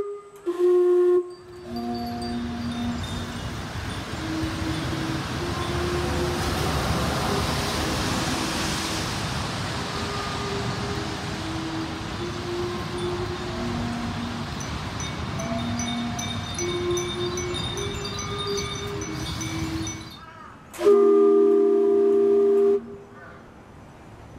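Steam whistles of the Otaru steam clock play a slow melody of low held notes over a steady hiss of steam, with glass furin wind chimes tinkling above it. Near the end the whistles sound a loud held chord of several notes for about two seconds.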